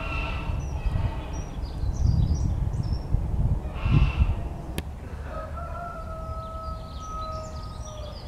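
Short, high bird chirps come and go, and from a little past halfway to the end one bird gives a long call held at a level pitch. Under them runs a low rumble with two louder swells, and a single sharp click comes just before the long call.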